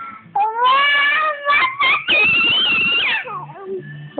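Toddler squealing in two long, very high-pitched cries with a few short yelps between, the second cry the highest and ending in a falling glide.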